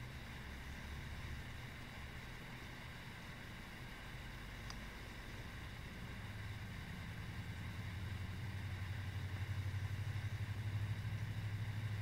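A low, steady motor-like hum that grows a little louder and pulses quickly in the second half.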